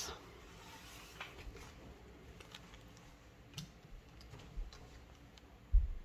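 Faint, scattered clicks and light rustles of glossy trading cards being handled and gathered up off a tabletop. A single soft low thump comes near the end.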